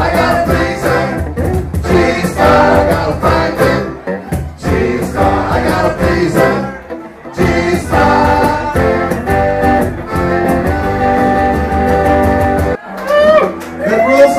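A live acoustic band playing: several men singing together over strummed acoustic guitars and accordion. The song stops suddenly shortly before the end, and a man starts talking.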